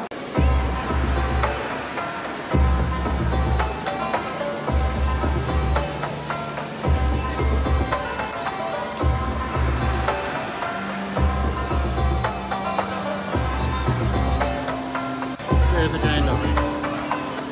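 Background music with steady held tones over a low bass note that comes back about every two seconds.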